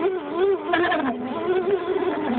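Electric motor and gear drive of an Axial SCX10 scale RC rock crawler whining as it crawls, the pitch wavering up and down with throttle and load.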